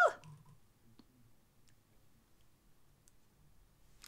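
The end of a short rising vocal exclamation, then near silence broken by a few faint, short clicks.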